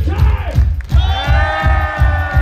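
Hard rock band playing live through a festival PA: a heavy kick-drum and bass beat at about four beats a second, with a long high note held over it from about a second in.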